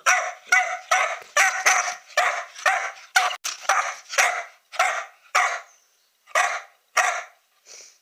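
A young dog barking repeatedly at its owner, short sharp barks about two a second, with one brief pause before a last couple of barks. It is demand barking for attention or play.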